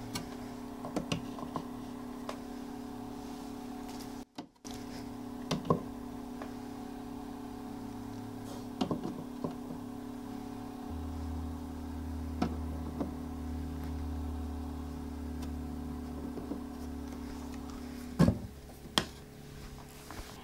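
Eggs being set on an incubator's egg tray by hand: a scattered handful of light knocks and clicks. Under them runs a steady low hum whose lowest note drops to a deeper one about halfway through.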